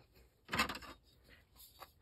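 Brief handling noise as a plastic ruler and silicone beads are picked up off a tabletop: a short rustle and clatter about half a second in, then a few faint ticks.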